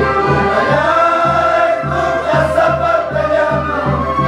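A large group singing a Qhapaq Qolla song in Quechua in unison, high voices holding long, gliding notes over a steady low beat of about three pulses a second.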